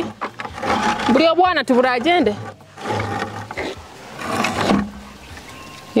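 Goats bleating: a loud, quavering call about a second in, followed by rougher, shorter calls later.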